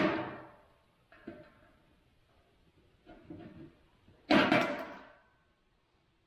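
Tin snips cutting 26-gauge galvanized steel sheet: a cut at the start that fades off, a couple of faint clicks, then a loud sharp cut about four seconds in that rings on for about a second.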